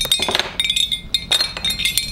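Several metal race medals clinking and jangling against each other as they are handled and hung around a neck: a quick run of bright ringing clinks.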